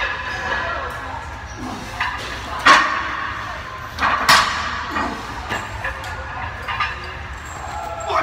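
Iron weight plates clanking twice, loud and sharp with a short metallic ring, over gym background chatter and music.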